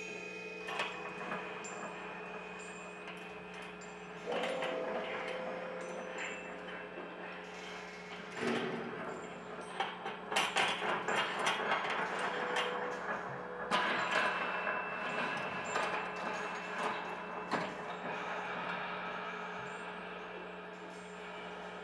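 Experimental improvisation on electric guitar and effects: several held, ringing tones over a steady low hum. A denser crackling, scraping texture builds about halfway through and swells again a few seconds later.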